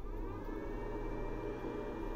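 EAFC Narzrle 3000W pure-sine-wave inverter taking up a 1 kW heater load: a whine that rises in pitch over the first half second, then holds steady over a constant hum. The inverter is only slightly noisier at this load than at 500 W.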